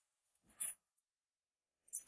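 Near silence, broken about half a second in by one brief, soft scrape of a watch being handled, with a faint tick a moment later.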